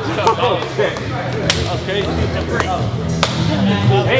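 Group of men cheering and talking over one another, with a few sharp hand slaps from high-fives and handshakes, about one and a half, two and a half and three and a quarter seconds in.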